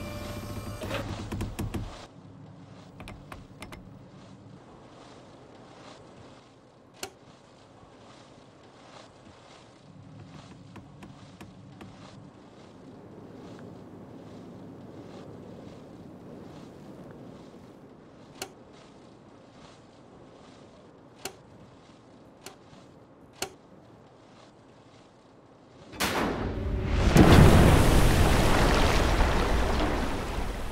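Quiet outdoor ambience with scattered faint clicks, then about 26 seconds in a large boat hits a pool of water: a sudden loud splash, with the spray coming down like a heavy downpour.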